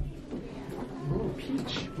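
Quiet voices, with a short, gliding, voice-like sound from one of the children about a second in.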